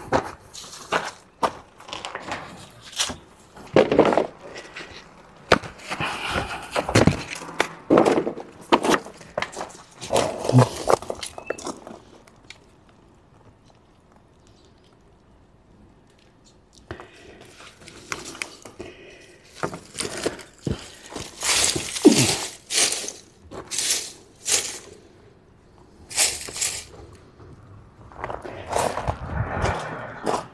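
Dry leaves, paper and thin wooden slats handled and stacked as kindling: irregular rustling, crackling and light wooden knocks in clusters, with a quiet stretch around the middle.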